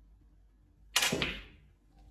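Snooker cue tip striking the cue ball and the cue ball clacking into the blue on a small snooker table: one sharp click about a second in, fading over about half a second.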